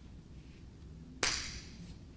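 A single sharp smack a little over a second in, fading over about half a second, against quiet room tone.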